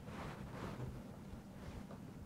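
Faint rustling and brushing of a blanched kale leaf being rolled by hand on a wooden cutting board, in two soft passes, one early and a shorter one near the end, over a low steady hum.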